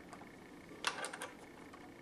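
A few light clicks about a second in as fingers handle the cutter of an old Singer serger, against faint room tone.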